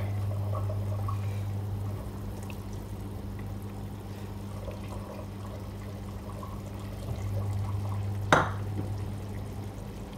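Tomato sauce with stock bubbling in a frying pan as cooked chicken pieces are tipped in and stirred through with a spatula, over a steady low hum. A single sharp knock comes near the end.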